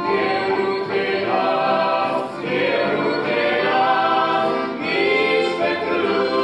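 Mixed men's and women's voices singing a Christian hymn together in harmony, with stringed-instrument accompaniment, performed live.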